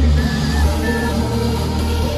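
Electronic dance music playing loud over a festival stage's sound system, heard from within the crowd, with a heavy deep bass.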